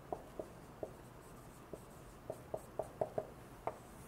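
Dry-erase marker writing on a whiteboard: about ten short, faint squeaks and taps as the letters are drawn, more of them in the second half.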